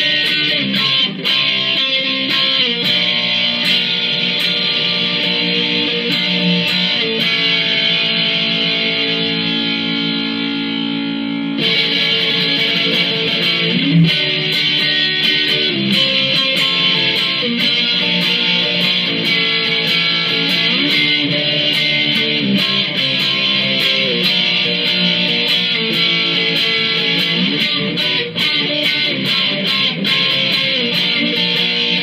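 Epiphone Emily the Strange G310 electric guitar played through a small amplifier: freestyle lead lines of sustained notes, some bending in pitch. The tone turns brighter about eleven seconds in.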